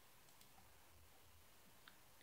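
Near silence: room tone with two faint clicks, one just under half a second in and one near the end.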